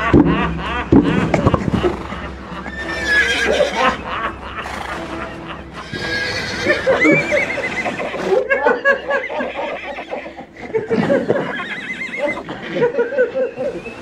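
A horse whinnying several times, as a radio-play sound effect.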